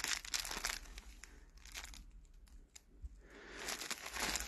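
Plastic wrapping on a packaged bedsheet crinkling faintly as it is handled. There is a quieter stretch around the middle, and the crinkling picks up again near the end.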